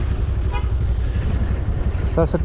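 Motorbike engine running under way, with a steady low rumble of engine and wind on the microphone. A short faint beep sounds about half a second in.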